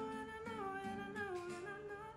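A man humming a wordless melody that steps downward note by note, over plucked acoustic guitar notes.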